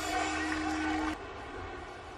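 Steady low background hum with a faint held tone, cut off abruptly just over a second in, leaving quieter background noise.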